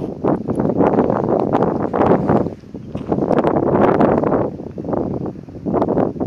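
Gusts of wind buffeting the microphone: a loud, rushing noise that dips briefly about halfway through and again near the end.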